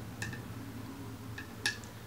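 A few light clicks with a short ring, from a glass foundation bottle and its cap being handled, over a low steady hum.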